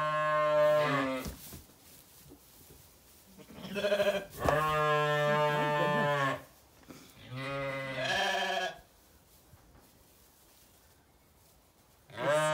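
Zwartbles ewes bleating: three long, steady baas, the first ending about a second in, the second running from about four to six and a half seconds, and a shorter one near eight seconds.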